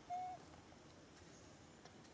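A bird calling: one short, clear hoot with a slight rise and fall in pitch, about a quarter second long, just after the start, over a faint background hiss.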